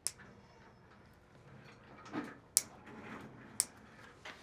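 Toenail nippers snipping thickened fungal toenails: three sharp clips, one right at the start and two about a second apart near the end.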